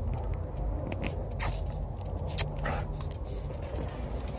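Low, steady rumble of a car heard from inside its cabin, with scattered small clicks and scrapes over it and one sharp click a little past halfway.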